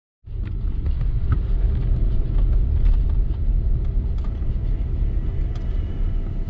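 Steady low rumble of a car's running engine heard from inside the cabin, starting just after the opening, with a few faint clicks.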